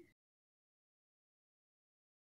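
Silence: the sound drops out completely just after the start, with no room tone at all.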